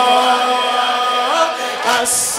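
A male reciter's voice through a microphone chanting a long held note of a Shia devotional chant (maddahi), with a crowd of men chanting along. The pitch steps up about a second and a half in.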